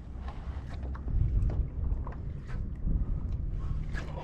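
Wind rumbling on the microphone over small waves lapping against a kayak's hull, with a few faint clicks.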